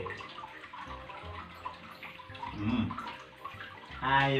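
Running water trickling steadily, with a brief low pitched vocal sound about two and a half seconds in.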